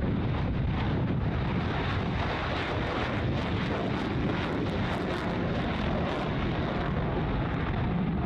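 F-15 fighter jet's twin engines running at takeoff power in afterburner as it rolls and lifts off: a steady, loud jet rush with a crackle through the middle seconds.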